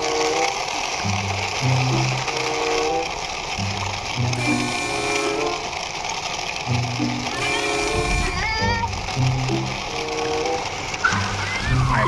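Background music: a simple melody of short held notes, repeating in a loop.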